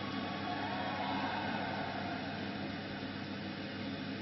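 A large crowd in an arena cheering, a steady wash of noise that slowly dies down.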